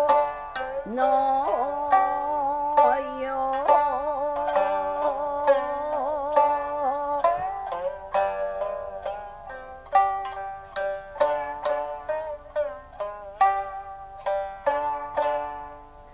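Jiuta shamisen (sangen) plucked with a plectrum, under a woman's long, wavering sung line in the first half. From about eight seconds in the shamisen plays on its own, with sparser plucked notes.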